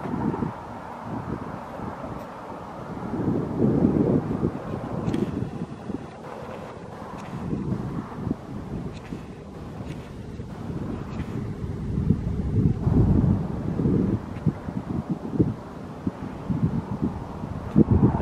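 Wind blowing across the camera's microphone, a low rumbling noise that swells and fades in gusts.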